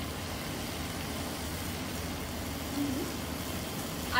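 Steady sizzle of shallots, tomato and vegetables frying in oil in a clay pot.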